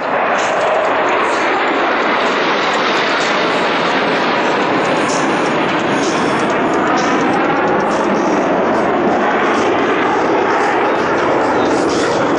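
Loud, steady jet engine noise of USAF Thunderbirds F-16 Fighting Falcon fighter jets flying overhead.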